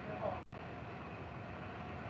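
Steady low background hiss and hum from an open microphone on a video call, cut out briefly about half a second in.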